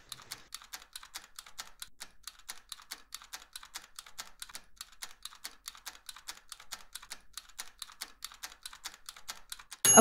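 Countdown-timer ticking sound effect: a steady run of quick clicks, about five a second, ending in a bright bell-like ding right at the end.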